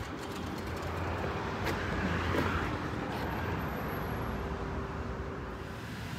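Steady road-traffic rumble with a faint steady hum, broken by a single short click a little under two seconds in.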